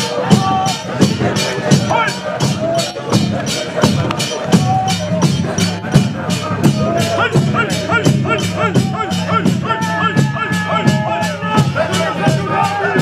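A congregation singing together in procession over drums and jingling hand percussion, the percussion struck sharply in a steady beat about three times a second.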